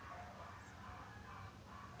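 Faint soft rubbing of fingertips on facial skin as BB cream is blended in.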